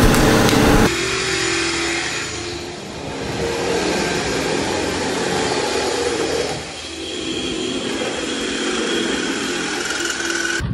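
A steady engine or motor sound with a few held tones, broken by abrupt changes about a second in and again around three and seven seconds in.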